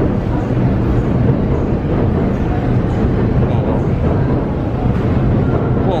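A loud, steady low rumble of background noise with no distinct events.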